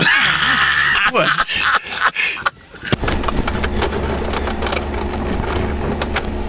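Men laughing heartily in a car for about the first two seconds. After a brief lull this gives way to a steady low hum with faint clicks.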